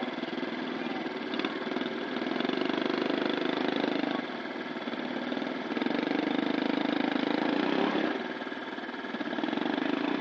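Small motorcycle engine revving in two long bursts, about two and six seconds in, as it strains to drive the bogged-down bike through deep mud. It drops back lower between the bursts.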